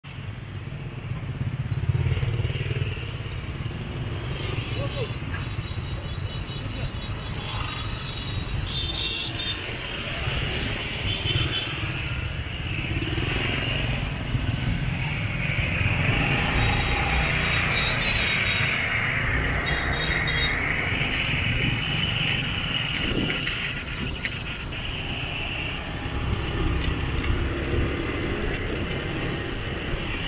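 Motorbike and scooter traffic running past, a steady engine rumble, with a couple of brief high beeps partway through.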